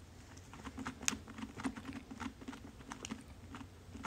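A cat clawing and batting at a sisal-rope cactus scratching post and its tethered ball: an irregular run of scratchy clicks and taps, a few a second, starting about half a second in.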